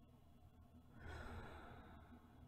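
A woman's soft, slow sleeping breath: one faint breath starting about a second in and tailing off near the end.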